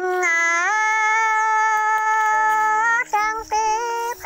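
A high solo voice singing a Dao-language love song (hát Dao duyên), holding one long note for about three seconds before breaking into shorter notes near the end.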